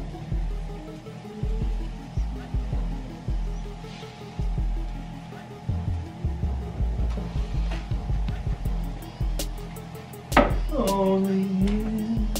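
Background music with a heavy, repeating bass beat; about ten seconds in, a pitched tone slides down and then holds.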